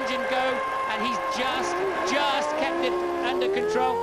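Onboard sound of a McLaren-Mercedes Formula One car's V10 engine running at high revs, its pitch climbing steadily through the second half as the car accelerates down the straight.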